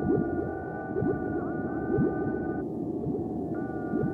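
Breakbeat electronic dance music with held synth chords and repeated bass synth sounds that slide down in pitch. The held chord tones cut out briefly past halfway, then return.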